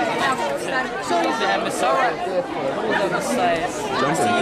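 Many voices chattering and talking over one another, with a laugh about a second in.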